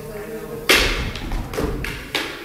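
Sharp knocks of a backsword bout: one loud strike about two-thirds of a second in, then three lighter clicks.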